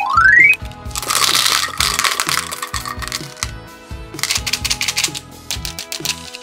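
Hard candy-coated candies poured from a small bottle, clattering into a plastic toy bathtub in a dense stream for about two seconds, then a second, shorter clatter of candies near the end, over background music.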